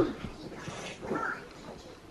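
A toddler's brief vocal sounds: a short falling whine at the very start and a faint squeak about a second in.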